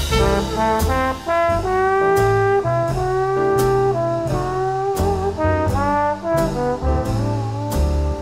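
Traditional jazz band playing an instrumental chorus with no singing: a brass horn carries a melody with some sliding notes, over a moving bass line and drum beats.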